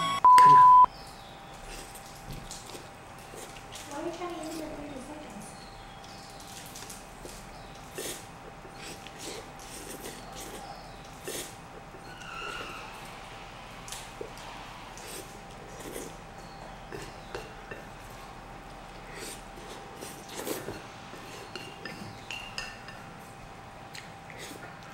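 A single electronic beep about half a second long marks the start of a timed eating challenge. It is followed by a man slurping and chewing spicy instant noodles in quick bites, with short scrapes and clicks of chopsticks against a ceramic bowl and faint mouth sounds.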